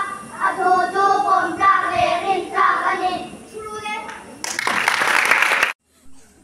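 Children singing together, the voices trailing off about three and a half seconds in. Then a burst of clapping that cuts off suddenly.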